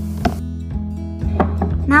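Background music with a steady low bed, over which come three short, soft knocks of a spoon against a glass bowl as thick chocolate mousse is spooned in.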